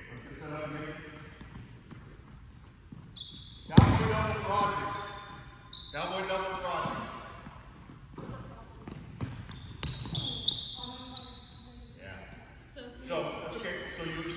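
Basketball bouncing on a hardwood gym floor, echoing in a large hall, with one loud thump about four seconds in.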